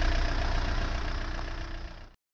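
Skoda Octavia's 1.9 TDI diesel engine idling steadily, fading away toward the end.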